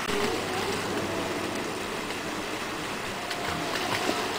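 Water pouring down a pool water slide and splashing into the pool, a steady rush.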